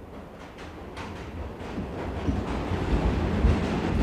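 A low, noisy rumble that builds steadily louder.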